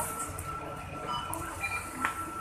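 Riding inside a moving public transport vehicle: a steady low rumble with a thin, steady high-pitched whine over it.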